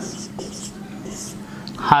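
Marker pen writing on a whiteboard: several short, faint strokes as a word is written out. A man's voice starts near the end.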